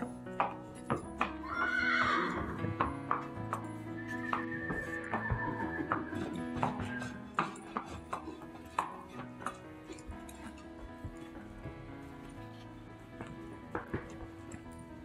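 Horse hooves clip-clopping on a concrete barn floor, with a horse whinnying about two seconds in, a quavering call lasting about a second and a half. Background music runs underneath.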